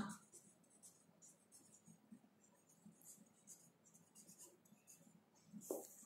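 Felt-tip marker writing on paper: faint, short scratching strokes.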